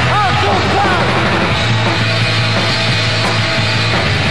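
Live rock band playing loudly, with a male voice singing sliding notes over the band for about the first second, after which the instruments carry on without the voice.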